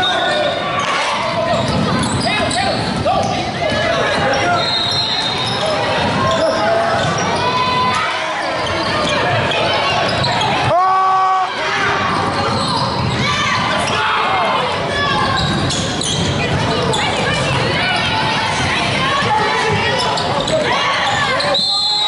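Gym sound of a youth basketball game: a ball bouncing on the hardwood court, sneakers squeaking and spectators and players talking and calling out, echoing in the hall. There is a short break in the sound about halfway through.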